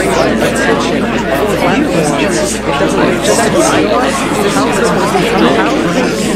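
Many voices talking over one another at once: a dense, steady babble of overlapping speech with no single voice standing out.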